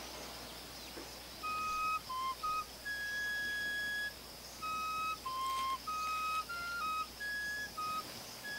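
A solo flute playing a slow melody of clear held notes, beginning about a second and a half in, with one longer note near the middle.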